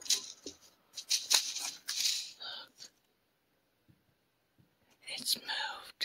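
Fine potting soil being sprinkled by hand over seeds in a pot, a dry, hissing rattle in a few short spurts.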